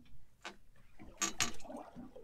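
Fishing reel being cranked as a fish is brought up, its gears clicking in a few sharp ticks: one about half a second in and a quick pair about a second and a quarter in.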